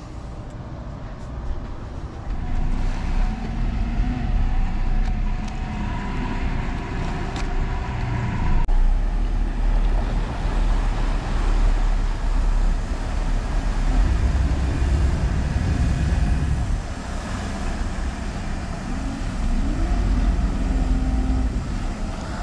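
A Cruisers Yachts 50 Cantius motor yacht running past under power: a steady engine drone with the rush of its wake, heavy in the low end. The sound shifts abruptly about nine seconds in, then carries on steadily.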